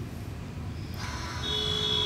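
A faint steady high-pitched electronic tone, like a buzzer, sets in a little past halfway over a low hiss.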